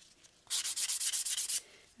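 A hand-held nail file rasping in quick back-and-forth strokes, taking the sharp edges off a metal file board freshly covered with stick-on file paper. The strokes start about half a second in and stop after about a second.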